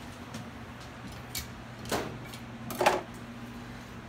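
A few short knocks and clatters of cookware being handled at a gas stove, the loudest a brief clatter about three seconds in, over a steady low hum.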